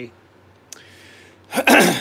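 A man draws a breath and then clears his throat once, a short, loud burst near the end.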